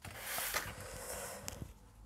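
Pieces of 2 mm grey board being slid by hand across a sheet of paper, a soft scraping rustle, with a light tap about one and a half seconds in.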